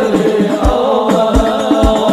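Arabic devotional song (sholawat): a voice chanting a wavering, drawn-out melody over a steady low drum beat, about one beat every two-thirds of a second.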